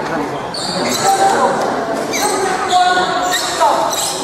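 Badminton play in a large indoor sports hall: three sharp, high squeaks and hits from the court over steady background chatter, with reverberation from the hall.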